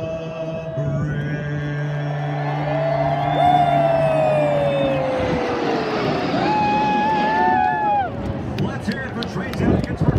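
A formation of military jets flying low overhead, their engine pitch falling steadily as they pass. Under it, a held sung note over the loudspeakers ends about five seconds in, and a crowd cheers.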